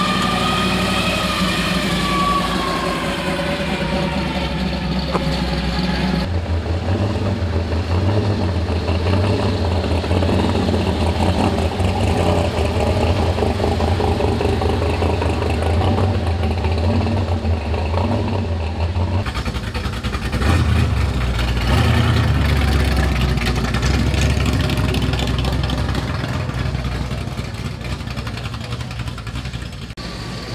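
Classic American cars' engines running as they drive slowly past one after another. The first, a first-generation Chevrolet Camaro, rises and then falls in pitch as it goes by. The sound changes abruptly about six seconds in and again near twenty seconds, where a steady low engine rumble gives way to the next car.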